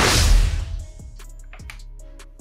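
Background music with a loud burst of noise at the start that dies away within about a second, followed by quieter music with light, regular percussion.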